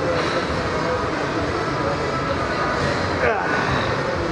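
Steady rushing background noise of a gym, with a brief rising voice sound about three seconds in.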